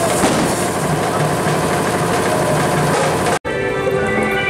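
Loud live drum-band music from dhol drummers, a dense, steady wall of drumming with a few faint melodic tones over it. It breaks off abruptly near the end.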